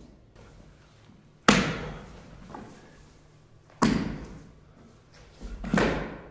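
Heavy thuds of a dancer's body striking the stage floor: two sharp ones about a second and a half and nearly four seconds in, and a third that swells up near the end, each fading out over about a second.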